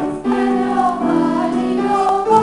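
Children's choir singing together in unison, holding sustained notes that step from pitch to pitch, with a brief break between phrases just after the start.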